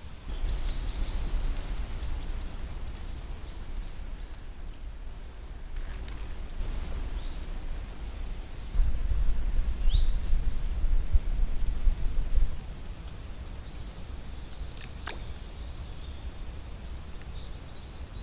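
Outdoor ambience of wind rumbling on the microphone, swelling in a strong gust about halfway through, with small birds chirping now and then and a single sharp click late on.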